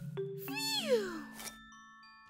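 A single pitched cartoon sound glides steeply downward for about half a second, over soft background music with held tones.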